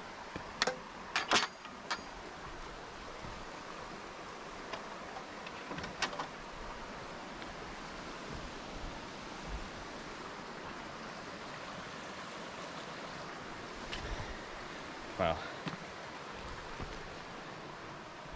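Steady rush of a shallow rocky river. About a second in, a wooden gate's latch and frame clatter as it is pushed open, with another sharp knock a few seconds later.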